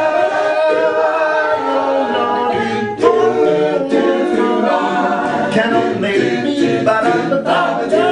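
A large a cappella vocal group singing in close harmony, several voice parts together with no instruments. A new phrase starts about three seconds in.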